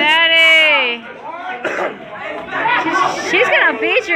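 Speech: people talking in a hall, with a long drawn-out call in the first second that falls slowly in pitch.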